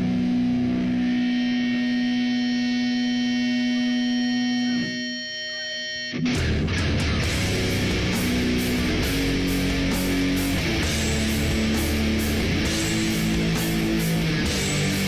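Live heavy metal band: a held, effects-laden electric guitar chord rings out, then after a brief drop about six seconds in the full band comes in with distorted guitars, bass and drums, cymbals hitting in a steady beat.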